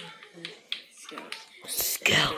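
A few short sharp clicks or taps with a faint voice underneath, then a brief loud burst of rustling noise shortly before the end.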